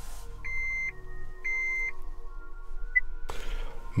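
Car dashboard chime: a high electronic beep of about half a second, repeating roughly once a second three times, then a short blip about three seconds in. A low rumble runs under the first second or so.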